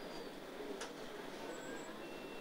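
Low steady background hiss of an operating room, with a single click a little under a second in and a few faint, brief high-pitched tones.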